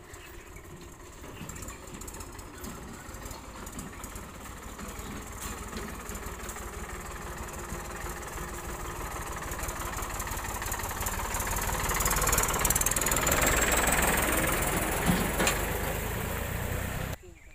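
A farm tractor's diesel engine and a motorcycle running as they approach and pass close by. They grow steadily louder and are loudest in the last few seconds, when a faint rising whine comes in.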